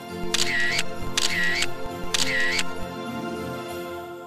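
Background music with sustained tones, overlaid with three camera-shutter sound effects about a second apart, as for photo snapshots.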